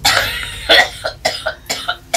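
A sick woman coughing in a rapid fit, about six or seven coughs in quick succession.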